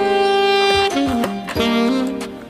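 Saxophone playing a melody: a long held note, a few short notes stepping in pitch, then another held note, over a steady low beat from a backing track.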